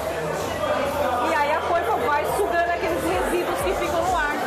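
People talking, with the chatter of other people around them.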